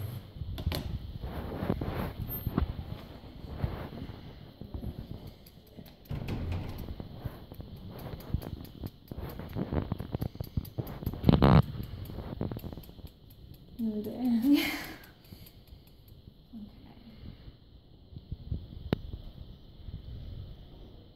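Indistinct, muffled voices and low handling noises in a small room, with a short rising voice sound about three-quarters of the way through.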